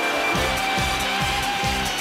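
Instrumental children's song music with no singing: a steady drum beat comes in about a third of a second in, at roughly two beats a second, under sustained instrumental tones.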